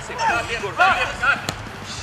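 A single sharp thud of a football being kicked, about one and a half seconds in, under a man's voice.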